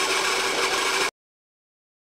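Vertical milling machine running with a steady high-pitched squeal from a bearing that is due for replacement. It cuts off abruptly about a second in.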